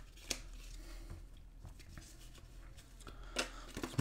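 Trading cards being slid across one another in the hand: faint card-on-card rustling with a sharp snap about a third of a second in and another small click near the end.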